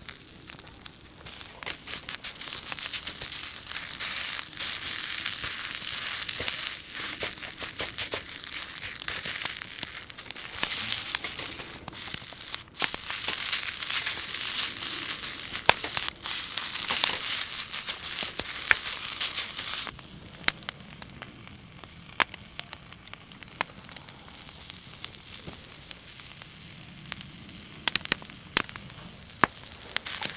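Rice frying in a wok-style pan over a wood fire, a steady sizzle with a metal ladle scraping and clicking against the pan as it is stirred and tossed. The sizzle drops off about two-thirds of the way through, leaving scattered clicks and fire crackle.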